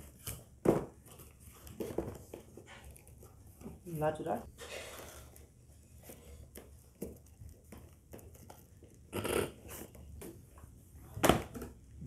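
Small cardboard phone boxes being handled: slid out of a corrugated shipping carton and set down on a glass counter, with light scraping and rustling of cardboard and scattered knocks, the sharpest a little before the end.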